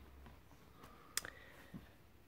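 A cardboard board-book page being turned by hand, mostly faint, with one sharp click just over a second in.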